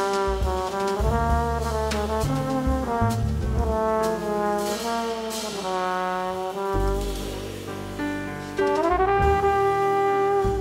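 Live jazz quartet: a flugelhorn plays a legato melody over piano, upright bass and drums with cymbals. Near the end the horn slides up into a long held note.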